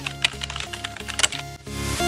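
Computer keyboard typing sound effect, a quick irregular run of key clicks, over background music that swells louder near the end.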